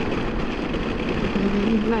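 Steady wind and road noise of a BMW R 1250 GS motorcycle on the move, with the engine running beneath it. A short low voice hum comes in near the end.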